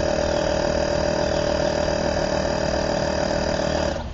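Portable air compressor running steadily, with a constant whine, pressurising the air chamber of a pneumatic antenna launcher to about 25 psi.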